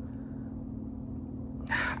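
A steady low hum of background room noise during a pause in talking, with a man's voice starting again near the end.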